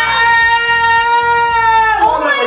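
A person's high-pitched scream, held on one steady pitch for about two seconds and dipping slightly at the end, in alarm at a centipede crawling on the floor.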